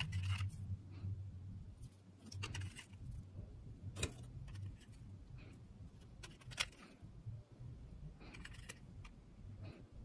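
Faint handling sounds of a small metal tin: soft rustles and light taps as fabric labels are lifted out, with two sharp clicks of fingers or labels against the tin, over a low steady hum.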